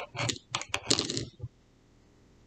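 Light clicks and taps of a paintbrush dabbing in a small plastic cup of white glue and being brought to a metal washer, stopping about a second and a half in.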